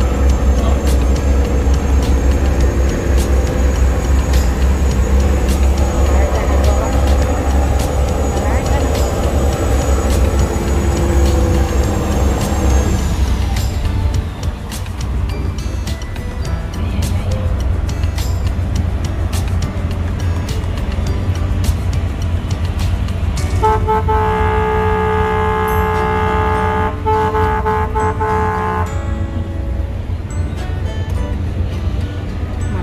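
Low, steady rumble of a ship's engines heard on a ferry's deck. About 24 seconds in, a ship's horn sounds a long blast with a brief break in it, for about five seconds.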